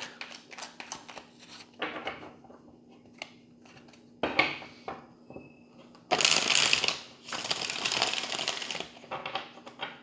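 A deck of tarot cards being shuffled by hand: light flicks and taps of cards at first, then two longer bursts of rapid shuffling about six to nine seconds in, the loudest part.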